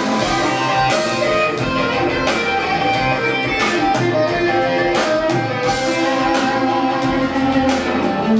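Live folk-rock band playing an instrumental passage: electric guitar and an electric mandolin-family instrument picking the tune together over a steady drum beat.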